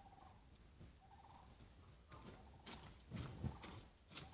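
Faint outdoor quiet with a distant short animal call repeated about once a second, then, from halfway in, rustling footsteps coming closer on soft, muddy ground.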